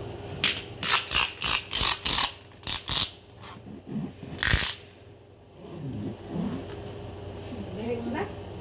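A large cardboard shipping box being opened by hand: a rapid series of about eight short ripping, scraping noises as tape and cardboard flaps are pulled, then one more about four and a half seconds in. Faint voices follow near the end.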